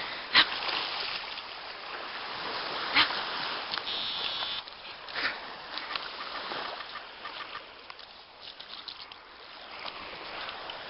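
Australian Shepherd splashing through shallow water at the sea's edge, with two sharp splashes, about half a second in and at three seconds, over a steady hiss.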